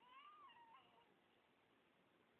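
A toddler's brief, faint, high-pitched whine that rises and then falls in pitch over about a second.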